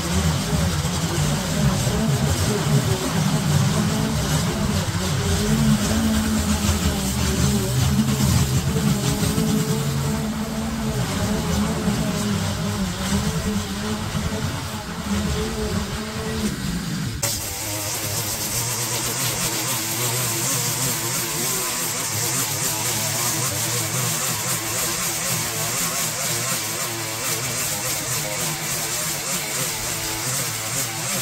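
Small petrol engine of a garden power tool running steadily under load, its pitch wavering slightly. About 17 seconds in, the sound changes abruptly to a steadier, hissier machine noise.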